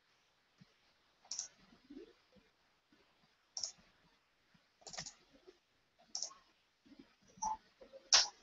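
Faint single clicks at a computer, about five of them spaced a second or two apart.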